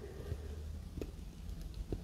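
Quiet room tone: a low steady hum with two faint small clicks, one about a second in and one near the end.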